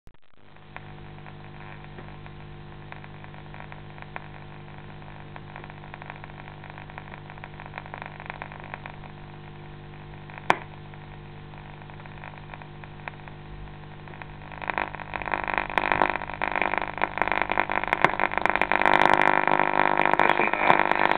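Vintage wooden tube radio being tuned: a steady hum with faint static, a single sharp click about halfway, then loud crackling static from about three-quarters through as the dial nears a station.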